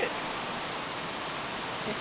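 Steady, even wash of ocean surf breaking along a rocky shore.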